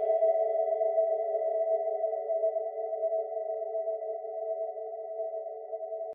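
A sustained synthesizer chord from an uplifting trance track, held on its own after the beat has stopped and slowly fading out as the track ends.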